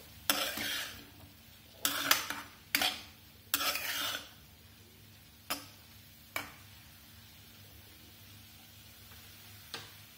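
A metal spatula stirs and scrapes a corn-and-vegetable mixture around a non-stick frying pan, making four scraping strokes in the first four seconds. Two short clicks follow a little later.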